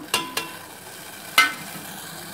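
Water boiling in a stainless steel pot, a steady bubbling hiss, as powdered agar agar goes in. A few metal clinks of a spoon against the pot, two near the start and the loudest about one and a half seconds in.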